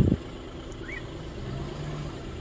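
Car engine idling, a steady low hum heard from inside the car while it is held up in a traffic jam.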